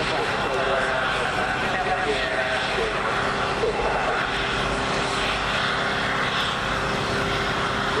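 Saab JAS 39 Gripen fighter's single jet engine running at low power as the jet taxis past: a steady, even jet noise with a constant whine. Voices from the crowd come and go over it.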